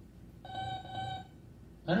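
Two short electronic beeps, flat steady tones run together, from a cartoon robot, played over classroom speakers.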